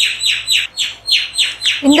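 A bird calling in a rapid series of short chirps that each fall in pitch, about four to five a second.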